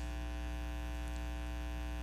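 Steady electrical mains hum with a ladder of even overtones, holding at one pitch and level throughout.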